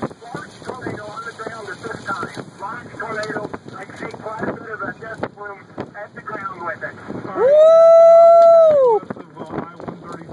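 Excited voices talking over wind, then a loud, drawn-out shout held on one pitch for about a second and a half near the end.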